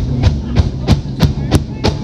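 Live rock band playing the opening bars of a song: drum kit and electric guitars, with drum hits landing evenly about three times a second.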